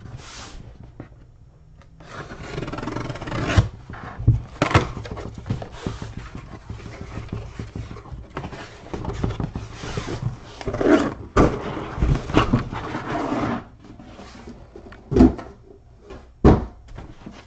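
Cardboard shipping case being handled and opened: long stretches of cardboard rubbing and scraping, broken by several sharp knocks as the boxes inside are handled, one loud knock near the end.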